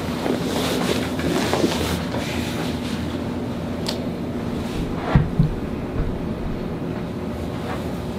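A person shifting and rolling over on a padded vinyl treatment table, with clothing rustling against the cushions over a steady room hum, and a single soft thump about five seconds in.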